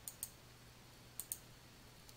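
Computer mouse clicked twice, once at the start and again just past a second in. Each is a quick press-and-release double click sound, faint, over a steady low hum.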